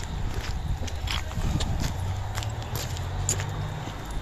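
Footsteps crunching over rubble and broken concrete debris, a few short crunches about two a second, over a low background rumble.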